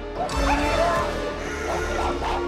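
Cartoon wolves barking and snarling in short wavering cries over dramatic background music.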